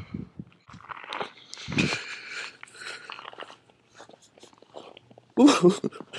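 Footsteps crunching through a thin layer of icy snow, an irregular run of crunches with a louder one about two seconds in. A short voice sound, like the start of a laugh, comes near the end.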